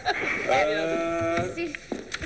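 A high, drawn-out vocal exclamation held for about a second, with a slight waver, between short bits of talk.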